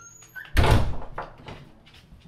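A bathroom door being shut, closing with a single loud thud about half a second in.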